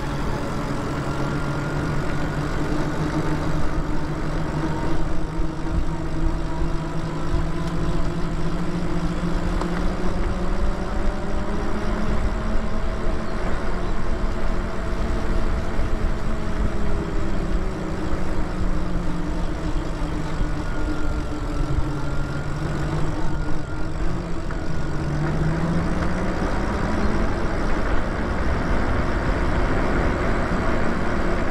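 Electric bike motor whining steadily while riding at speed, its pitch rising and falling gently with speed, over low wind rumble on the microphone.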